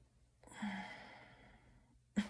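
A woman sighs once: a long breathy exhale with a short voiced start, beginning about half a second in and fading away.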